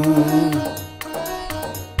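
Devotional hymn music between sung lines: the last held note of a line fades out in the first half second, then the Korg Pa arranger keyboard's accompaniment carries on more quietly with a light percussion rhythm.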